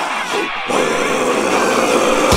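Plucked guitar notes, then about two-thirds of a second in a long, harsh monster roar starts over the music, the giant ape's roar sound effect.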